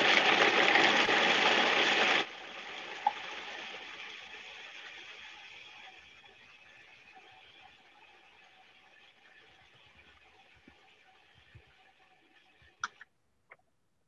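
Food processor running briefly, blending a thick mix of onion, dried apricots and soaked sunflower seeds. It cuts off about two seconds in, leaving a much fainter noise that fades away over the next ten seconds.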